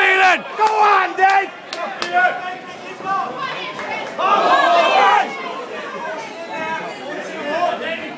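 Boxing crowd shouting encouragement, with several voices yelling over the general chatter and a loud burst of shouting about four seconds in.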